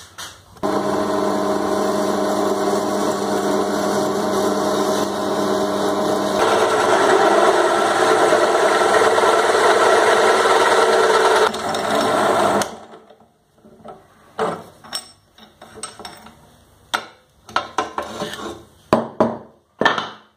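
Bench drill press motor running with a hole saw in the chuck; after about six seconds the saw bites into the workpiece and the sound grows louder and rougher. The motor cuts off a little past halfway, followed by scattered clicks and knocks as the drill-press vise is worked.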